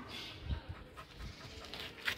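Pit bull pup panting, with a few low thumps about half a second and a second and a quarter in.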